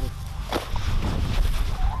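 Wheat stalks rustling and feet and a spade scuffing on dry straw and soil in a wheat field, with a sharp knock about half a second in and a steady low rumble underneath.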